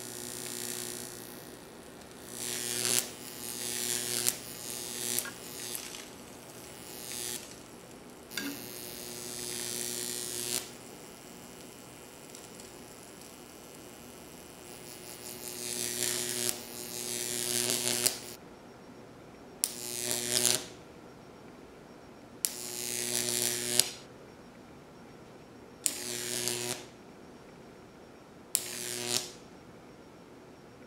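A Jacob's ladder fed by a 15 kV transformer, its arc buzzing with a mains hum. About ten separate arcs: each grows louder for one to three seconds, then cuts off sharply, with a quieter hum in the gaps between them.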